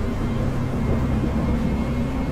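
Deep, steady rumbling drone of an animated logo-reveal sound effect, with a faint thin high tone entering about halfway through.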